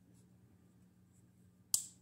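The blade of an old US-made Craftsman traditional folding knife snapping shut once, a single sharp click near the end after a quiet stretch. The pivot has just been cleaned and oiled, and the action is significantly better.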